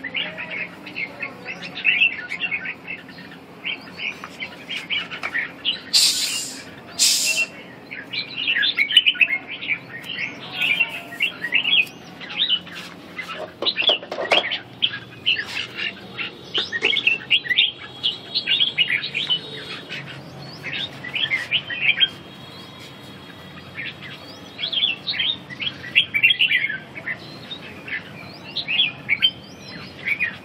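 Caged red-whiskered bulbuls singing, a steady stream of short, quick, gliding chirps and warbled phrases from several birds at once. There are two brief rustles about six and seven seconds in.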